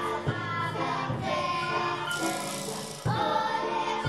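Children's choir singing a song with instrumental accompaniment and jingling percussion.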